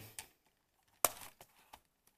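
A few light clicks and clacks from the plastic parts of a hand-operated toy robotic arm as it is handled and swivelled, the sharpest about halfway through.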